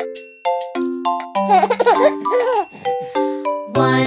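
Instrumental children's music between sung verses: a bouncy melody of short, separate notes, with a baby's giggle in the middle.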